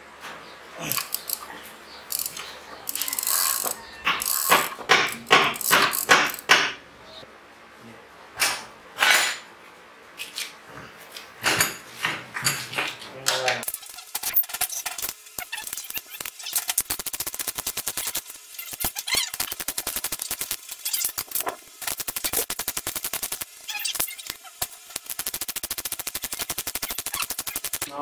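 Metal parts clinking and clanking as a flywheel and sprocket are handled on a small generator engine. About halfway through, a hand ratchet wrench starts clicking rapidly and steadily and keeps on.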